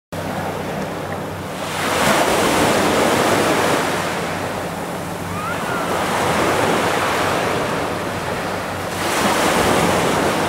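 Ocean surf washing and breaking, swelling louder and easing off every few seconds, with wind buffeting the microphone.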